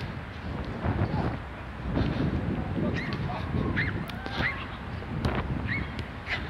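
A small dog barking hoarsely: a run of short, rasping barks about every half second to second, mostly in the second half.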